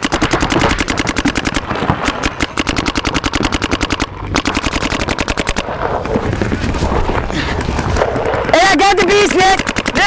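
Rapid, continuous fire from electronic paintball markers, many shots a second, with a brief lull about four seconds in. Near the end a voice shouts over the shooting.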